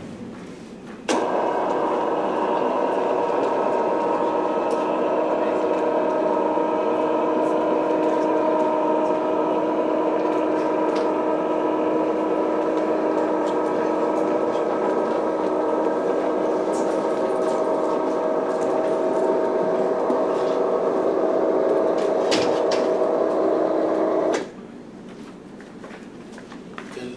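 Electric motor of a roll-up projector screen running steadily as the screen rises, a hum made of several steady tones. It starts abruptly about a second in and cuts off suddenly about two seconds before the end.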